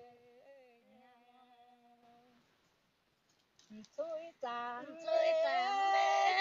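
Women singing a Red Dao folk song duet: a held note with a small waver fades away, a brief near-silent pause follows, and singing starts again about four seconds in, growing louder near the end.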